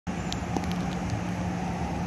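Steady outdoor background noise with a low, even hum and a few faint ticks, typical of distant road traffic.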